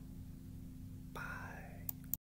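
Steady low hum, with a man's soft breathy whisper-like vocal sound, falling in pitch, starting just past a second in, and a sharp click near the end.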